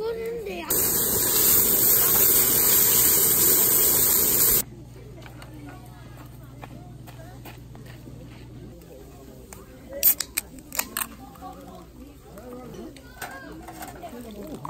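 Meat sizzling on a barbecue grill: a loud, steady hiss that starts abruptly about a second in and cuts off about four seconds later. A few sharp clicks follow around two-thirds of the way through.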